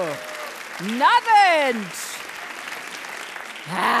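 Studio audience applauding while a woman lets out one long, drawn-out vocal call that rises and falls in pitch about a second in, and a short "ah" near the end.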